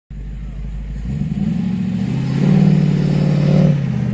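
A hot rod's engine and exhaust as the car drives past, growing louder as it accelerates about halfway through and easing off just before the end.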